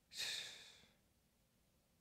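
A man's single breathy exhale, like a sigh, into a close microphone, lasting under a second, then near silence.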